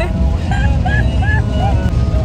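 A woman laughing, a few short repeated bursts, over the steady low rumble of a car's cabin on the road.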